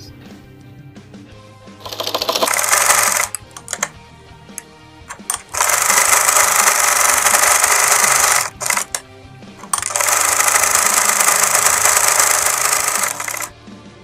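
Privileg Voll-Zickzack electric sewing machine stitching in three runs of a few seconds each, with short stops and brief starts between as the seam is sewn.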